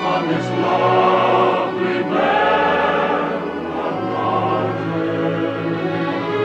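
Choir singing with orchestral accompaniment, in long held notes, with the bass and chord changing about every two seconds.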